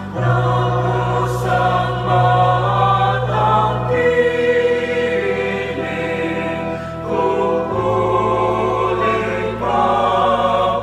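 Mixed choir singing a Tagalog hymn in parts, over steady held accompaniment chords that change about four seconds in and again near eight seconds.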